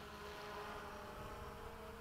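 Faint, steady whine of a Freewing MiG-21 RC jet's 80mm electric ducted fan, heard at a distance as the jet flies its landing approach.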